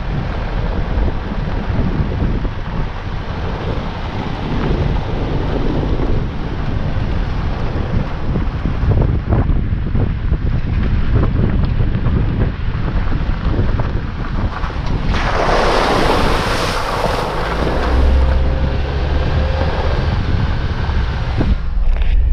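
Jeep Wrangler driving a dirt trail, with a steady rumble of tyres on gravel and engine, and wind on the exterior microphone. About fifteen seconds in, a loud burst of splashing lasting about three seconds as it drives through a shallow creek crossing.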